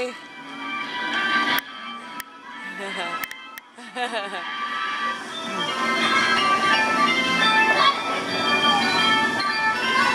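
Merry-go-round music playing as the ride turns, faint at first and swelling to full level about four seconds in, with a few sharp clicks early on. A person laughs about halfway through.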